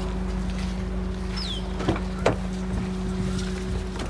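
Steady low hum of an idling engine, with two sharp clicks about halfway through.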